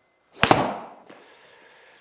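A 52-degree Cleveland wedge strikes a golf ball with a single sharp crack about half a second in. An instant later the ball smacks into the simulator screen, and a short tail fades away after it.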